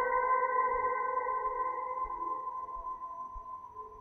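Ambient electric guitar, run through reverb and delay pedals, holding one sustained note with its overtones as it slowly fades out.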